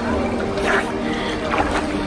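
Pool water splashing and lapping as a child swims, with two brief splashes, over background music holding steady chords.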